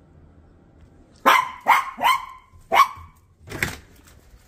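Small dog barking four times in quick, sharp yaps, excited at the sight of a familiar person, followed by a shorter, noisier burst near the end.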